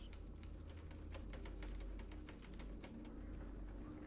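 A quick, irregular run of light clicks lasting about two seconds, over a steady low hum.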